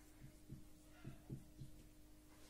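Faint soft taps of a marker writing on a whiteboard, about five short strokes over two seconds, over a low steady hum.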